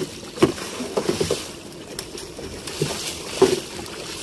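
A large speared ray thrashing at the surface beside a wooden boat, churning and splashing the water, with several sharp splashes or knocks, the loudest about three and a half seconds in.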